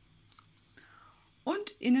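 Faint handling of a stiff paper greeting card as it is opened, a soft tick and a brief rustle over quiet room tone. A woman starts speaking near the end.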